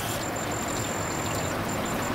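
Steady outdoor background noise with a thin, high-pitched whine running through it.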